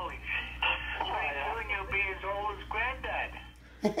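Speech played through a phone's small speaker, thin and tinny, over a steady low hum. It stops just before a live laugh near the end.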